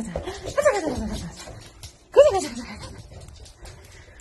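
Excited dog whining and yelping in drawn-out cries that rise and fall in pitch: one about half a second in and a louder one about two seconds in.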